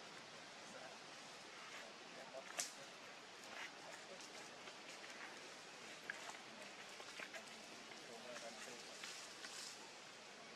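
Faint outdoor background hiss with a few soft clicks and rustles scattered through it; the sharpest click comes about two and a half seconds in.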